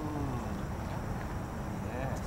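A German Shepherd puppy whining: one drawn-out whine that rises and falls at the start, and a shorter, higher one near the end.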